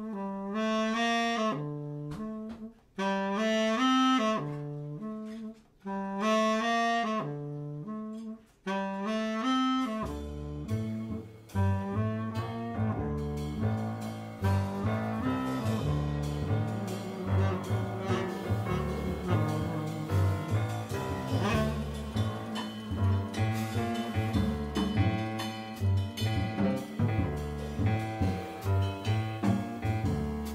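Live jazz quartet: the tenor saxophone plays the theme in short phrases with brief gaps. About ten seconds in, the double bass and drums come in, and the full band of tenor sax, piano, bass and drums plays on together.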